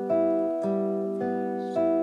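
Classical nylon-string guitar with its open G, B and high E strings plucked one at a time in a repeating thumb–index–middle pattern, about two notes a second, each note ringing on under the next.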